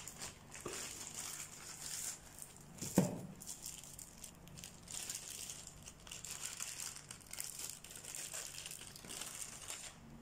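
Plastic packaging bags crinkling and rustling softly as they are handled and unwrapped, with one sharp knock about three seconds in.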